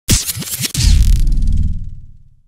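Electronic logo sting: a few quick scratchy swishes, then a deep bass hit just under a second in that slowly fades away.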